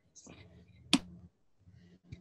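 A single sharp click about a second in, over faint room noise.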